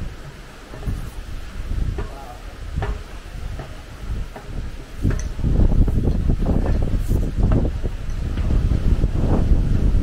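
Wind buffeting the camera microphone, which grows much stronger about halfway through, with a few sharp knocks early on from climbing the scaffold stair treads.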